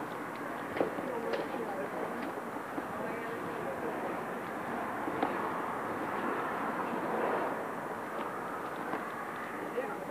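Indistinct voices talking over a steady outdoor background hum, with a few short clicks in the first half.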